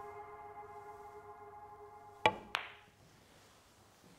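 A chime-like musical tone fades away over the first two seconds. Then the cue tip strikes the cue ball with a sharp click, and about a third of a second later the cue ball clicks into the black ball, potting it with right-hand side.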